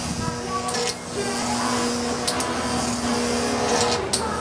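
Halloween electric-chair prop running, with a steady electric buzz-hum and a few brief sharp hisses scattered through it.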